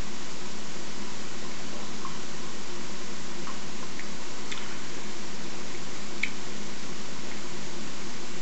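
A few faint wet mouth clicks of sipping and swallowing from a glass of lightly carbonated pear cider, over a steady hiss and low hum.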